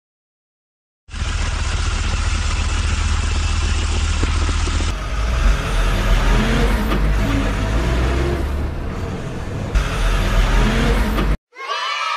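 Sound effect of a heavy machine's engine, as for the excavator in the picture: it starts about a second in and runs steadily. Partway through it changes to a rising and falling revving, and it cuts off suddenly near the end.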